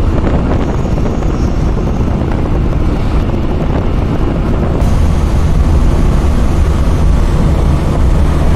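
Cabin noise of a vehicle driving on a highway: steady engine rumble with road and wind noise, growing a little louder from about five seconds in.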